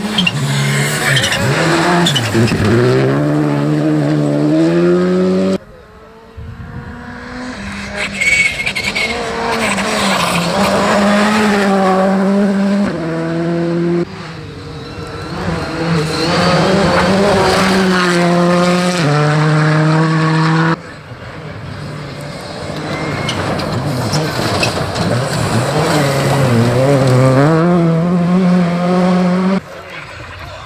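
Rally cars on a gravel stage, their turbocharged four-cylinder engines revving hard. The pitch climbs and then drops at each upshift, over several passes that change abruptly at about 6, 14 and 21 seconds.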